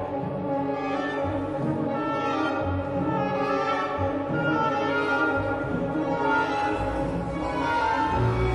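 Symphony orchestra playing a restrained passage of classical music, bowed strings with brass, at a steady level.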